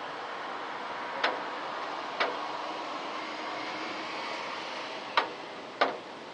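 Rain falling steadily, a soft even hiss, broken by four sharp ticks: two in the first few seconds and two close together near the end.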